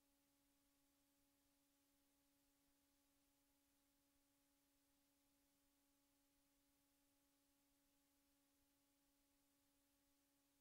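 Near silence, with only a very faint steady hum and hiss.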